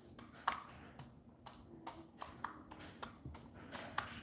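A H'mông chicken pecking grain from a clear plastic cup: its beak taps sharply against the plastic, about three pecks a second, unevenly spaced, some with a brief ring.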